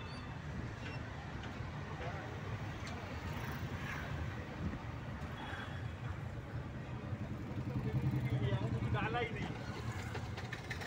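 Car engine and road rumble heard from inside the cabin while driving slowly in traffic, growing louder for a couple of seconds near the end. Faint voices come in near the end.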